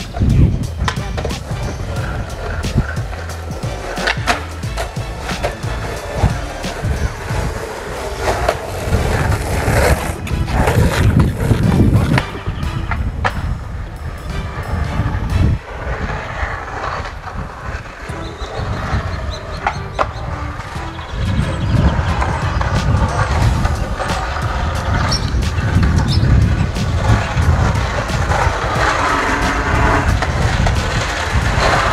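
Skateboard wheels rolling on street asphalt, with repeated clacks of the board striking the road during freestyle tricks.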